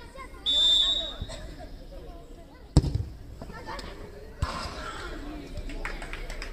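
A referee's pea whistle blows one short, high blast, restarting play with the ball at rest, and about two seconds later a football is kicked with a single sharp thud.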